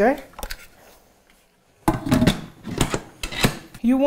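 The pressure lid of a Carl Schmidt Sohn electric pressure cooker being set on the pot and turned to lock. It makes a quick run of clicks, knocks and scrapes, starting about halfway in.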